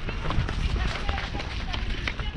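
A horse's hoofbeats on grass turf at a canter, heard from the saddle as a run of irregular thuds, under heavy wind rumble on the microphone.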